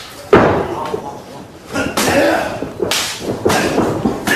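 Sharp smacks of pro wrestling impacts, strikes or a body hitting the ring canvas. The first and loudest comes about a third of a second in, another about three seconds in, with shouting voices between them.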